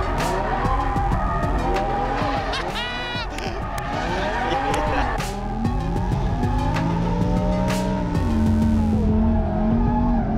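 Lamborghini Huracán drift car sliding sideways: the engine revs rise and fall hard again and again while the rear tyres squeal, under background music.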